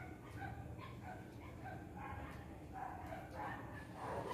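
A dog yipping and whimpering faintly, in short calls about three a second, over a low steady hum.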